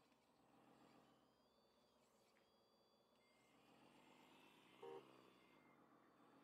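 Near silence: faint outdoor background with thin high tones and one brief faint pitched blip near the end.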